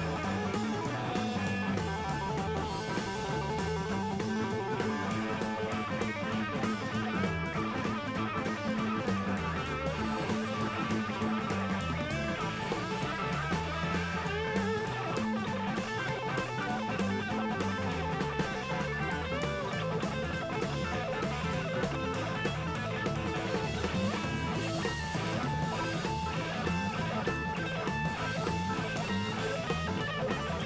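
Electric guitar solo played on a Gibson ES-335, backed by bass guitar and a drum kit in a live rock band recording, with a bass line that climbs and falls in a repeating figure.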